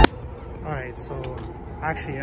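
Music cuts off abruptly at the very start. It leaves a quiet background with two short murmured voice sounds, one about half a second in and one near the end, and a few faint clicks.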